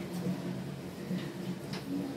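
A wet slice of tinder fungus (Fomes fomentarius) tube layer rubbed over the skin of the chin, a few faint short scrubbing strokes. A steady low hum runs underneath.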